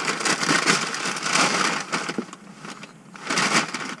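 Shopping bag and white paper wrapping crinkling and rustling as a candle jar is pulled out. The rustling eases off about two seconds in, with one short burst near the end.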